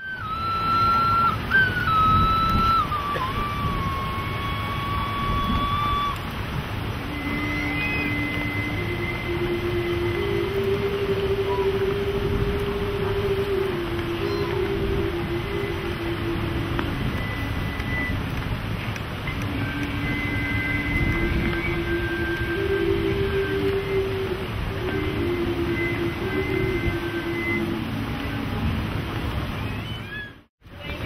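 Small mouth-held wind instruments played by a group: a high whistle-like tone slides down over the first few seconds, then a slow melody of long, pure held notes steps up and down, over a steady rushing noise.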